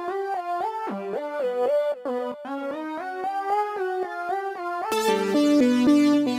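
kHs ONE software synthesizer playing a quick melodic line of short, stepping notes. About five seconds in, the preset changes and the sound turns brighter and fuller, with lower notes underneath.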